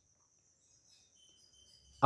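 Near silence: faint room tone with a thin, steady high-pitched hiss.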